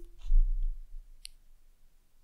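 The tail of a spoken goodbye, then a dull, very deep thump and a single sharp click about a second in, followed by quiet.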